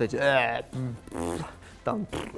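A man's voice speaking Russian: one word, then drawn-out hesitation sounds as he searches for the next words.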